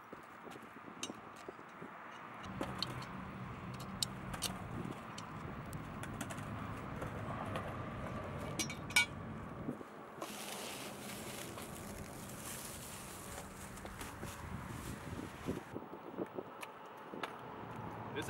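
Quiet outdoor ambience with scattered small metal clicks and clinks as the steel legs and parts of a skateboard rail are handled. A low steady hum runs for several seconds early on, and around the middle a steady hiss of plastic wrapping being rustled lasts about five seconds.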